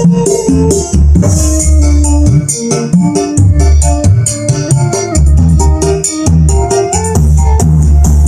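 Loud music with a strong bass line and keyboard melody, played over Bluetooth through a homemade OCL 150-watt stereo power amplifier with a tone-control board, its bass turned up and the Galaxy effect board switched on, out of a speaker cabinet with a woofer and tweeter.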